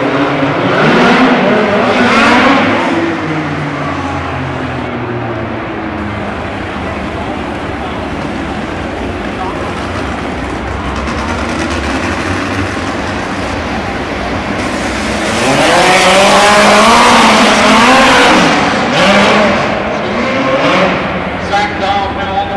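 Midget race car engines running hard on a dirt track, their pitch rising and falling as they rev through the turns. The engines are loudest about two seconds in and again from about fifteen to nineteen seconds in, as the cars come past.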